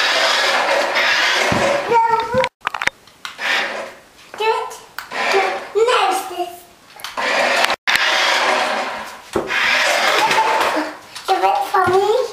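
Toy radio-controlled car's electric motor whirring in three bursts of a few seconds each, with children's voices in between.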